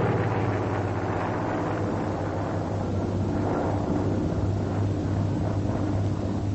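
F4U Corsair's Pratt & Whitney R-2800 radial engine running steadily in flight, a continuous drone with a deep hum.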